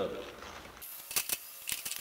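Light clicks and clatters of molds and a toaster oven's wire rack being handled as the molds are set inside the oven, an irregular run of sharp clicks starting about a second in.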